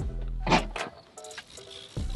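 Background music with a beat. There is a loud hit about half a second in, then the bass drops out for about a second before the full beat comes back at the end.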